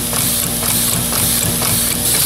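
Homemade compressed-air engine built from a pneumatic ram cylinder, running steadily at low air pressure. Its valve gear makes a fast, even run of knocks, one per stroke, over a steady hiss of air.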